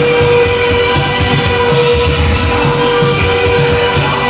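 Loud live noise-rap music played through a club PA: one steady held tone over a dense, repeating low beat and a wash of noise.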